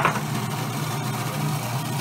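Food processor motor running steadily, its blade spinning through garlic paste for toum, with a sharp click at the very start.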